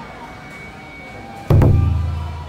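Background music, then about one and a half seconds in a sudden, loud, deep boom that rings on and slowly fades.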